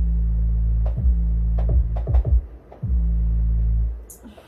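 Synthesizer playing a loud, deep held bass note. Several quick downward pitch sweeps break it, about a second in and a few times more, and it stops just before the end.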